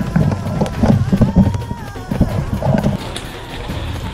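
Footsteps and gear thumping heavily and irregularly as a player moves fast through jungle undergrowth on leaf litter, easing off after about three seconds.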